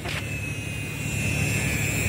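A steady low rumble with a thin, steady high whine over it: a jet aircraft's engines.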